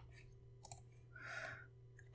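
A single computer mouse click about two-thirds of a second in, then a soft breath, over a faint steady hum.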